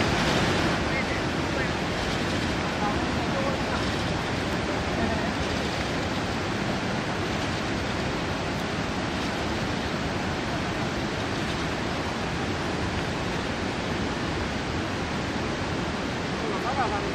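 Steady rushing of river water, an even wash of noise that stays at the same level throughout.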